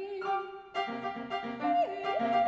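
Soprano and piano performing a contemporary classical art song. The soprano holds a note over piano chords; the chords repeat at an even pulse, and about one and a half seconds in the soprano moves up to a higher held note.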